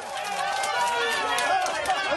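Crowd of passengers in an airliner cabin shouting and cheering over one another, with scattered handclaps.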